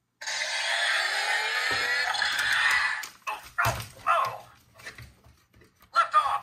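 Electronic sound effect from a Buzz Lightyear action figure's built-in speaker: a loud rocket-blast rush lasting about three seconds, sinking slightly in pitch, then a few shorter, quieter sounds.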